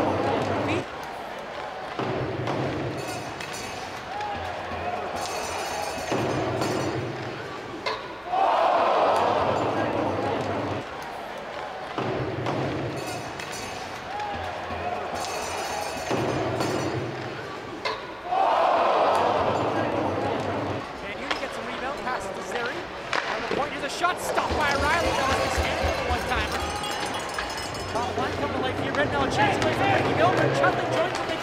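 Ice hockey arena sound: crowd noise with sharp knocks of puck and sticks on boards and ice, the same passage heard again about every ten seconds.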